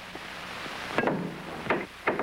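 A pool cue strikes a billiard ball with a sharp knock about a second in, and a second, lighter knock follows shortly after. Steady hiss from an old film soundtrack runs underneath.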